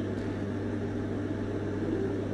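A steady low hum with a faint, even background noise.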